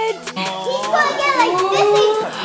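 Several children's high-pitched voices calling and squealing over one another, excited and without clear words.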